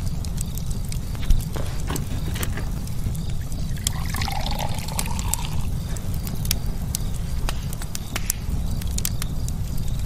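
A wooden match burning as a cigar is lit: scattered sharp crackles over a steady low rumble.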